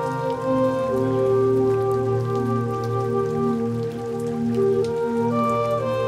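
Slow ambient music of long held chords that change every second or two, with a light patter of rain underneath.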